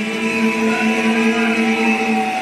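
A congregation singing a hymn in a church hall, holding a long, steady note.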